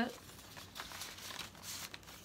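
A paper envelope and a banknote rustling faintly as the bill is slid into the envelope and handled, a little louder near the end.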